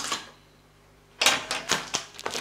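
Clear packing tape and white plastic strapping being torn and pulled off a large cardboard box: one short rip at the start, a pause, then several quick rips close together in the second half.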